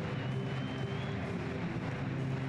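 Football stadium crowd noise, a steady roar with fans holding a sustained chant. A faint high whistle sounds briefly in the first second.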